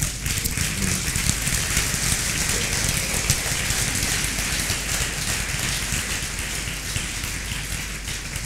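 Congregation applauding: a dense, steady clatter of many hands clapping that eases off slightly toward the end.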